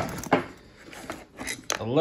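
Metal hand tools clinking and clacking as they are handled among the pockets of a tool backpack. There is a sharp clack at the start, another shortly after, then a pause and several quicker clicks near the end.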